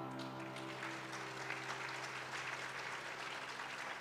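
The last chord of a grand piano piece ringing out and slowly fading, while audience applause builds from about a second in.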